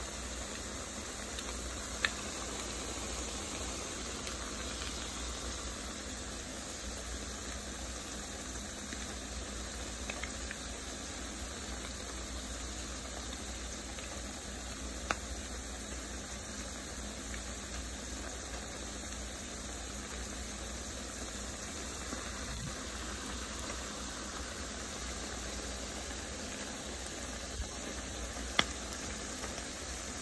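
Salmon patties frying in a skillet of hot oil: a steady sizzle, with a few sharp pops scattered through it.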